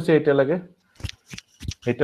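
A man's lecturing voice for well under a second, then a gap broken by about five short, sharp clicks before the voice comes back.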